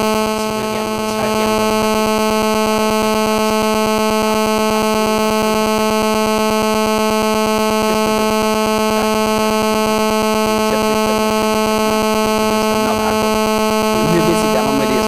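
A loud, steady electrical buzz with a row of overtones, as loud as the talk around it, covering the voices so that only faint traces of speech come through.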